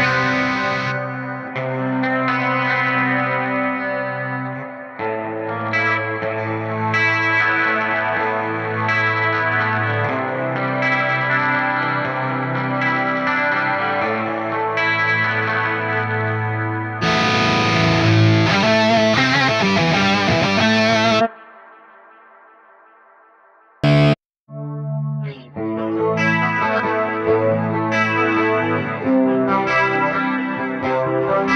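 S by Solar TB4-61W single-pickup electric guitar played through an amplifier with effects, chords ringing out. About two-thirds through, the playing cuts off and rings away, a short loud stab follows, then the playing picks up again.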